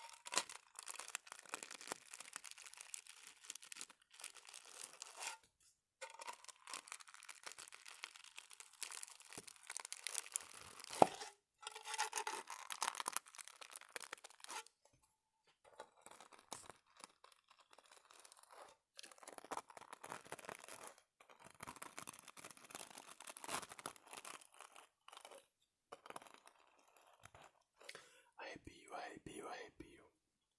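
Close-miked scratching and rubbing with a stiff bristle brush, in irregular bursts of rough, scratchy noise broken by short pauses, with one sharp louder scrape about 11 seconds in.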